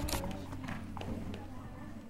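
A show-jumping horse cantering on sand footing: a handful of hoofbeats at an uneven rhythm.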